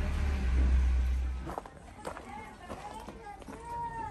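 Low steady engine rumble heard from inside a car stopped at road works, cut off about one and a half seconds in. Faint distant voices follow.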